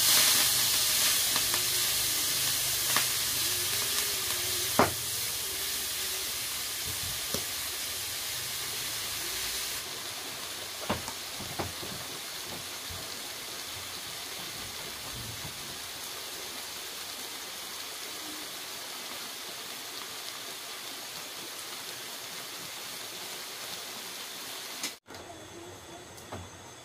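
Leafy greens dropped into a hot frying pan over a wood fire, sizzling loudly at once and slowly dying down, the hiss easing off about ten seconds in. A few sharp knocks sound over it.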